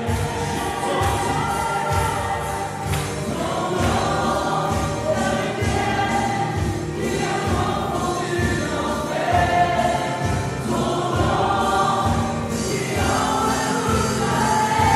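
A live worship band playing: a man singing, with acoustic guitar, electric piano and a drum kit keeping a steady beat.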